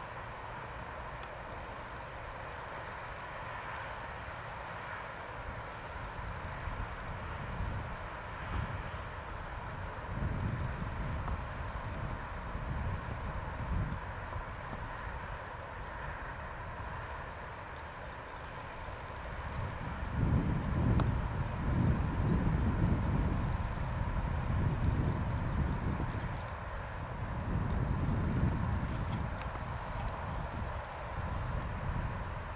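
Open-field ambience: wind buffeting the microphone in gusts, heavier in the second half, over a steady faint distant hum.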